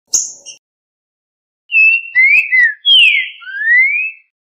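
Recorded song of a trinca-ferro (green-winged saltator) played back as bird-training audio: a short scratchy call near the start, then a phrase of clear whistled notes that glide down and then rise, of the 'boca mole' song type.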